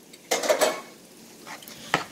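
A metal spoon scraping and clinking against a skillet as canned corned beef is pushed into cooking cabbage, over a soft sizzle. The loudest scrape comes about half a second in, and there is a sharp clink near the end.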